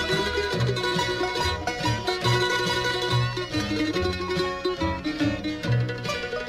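Bluegrass string band playing an instrumental passage led by mandolin, with plucked strings and a steady run of low bass notes beneath.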